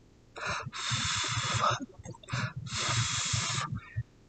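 Someone blowing on a freshly brushed top coat to dry it faster: a short puff, then a longer blow of about a second, done twice.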